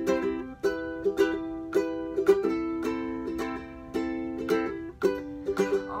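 Ukulele strummed in a steady rhythm, changing chords about three times.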